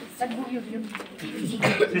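Indistinct voices of people talking, with a cough.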